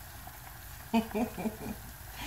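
A woman's voice, brief and untranscribed, about a second in, over a faint low hum. No separate mixing or squishing sound stands out.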